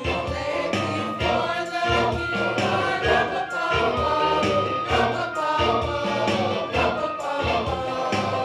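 Church choir of adults and children singing together in several voice parts, over a steady low rhythmic pulse.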